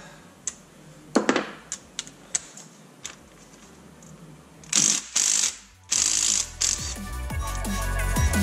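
A few light metallic clicks, then three short bursts from a cordless power tool spinning a 12-point socket on the cylinder-head bolts of an LS1 V8 as they are loosened. Electronic music with a drum beat fades in near the end.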